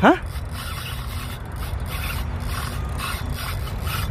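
Spinning reel's drag running steadily in a rasping, clicking buzz as a hooked fish pulls line off against the hard-bent rod. A short rising exclamation comes at the very start.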